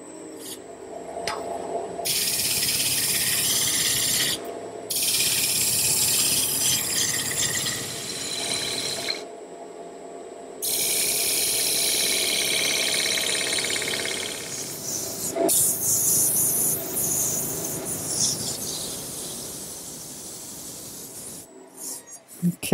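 Wood lathe spinning a wooden blank while a gouge and then a chisel cut into it, a rough hiss of shavings being peeled off in several spells with short breaks as the tool is lifted. The cutting tails off over the last few seconds.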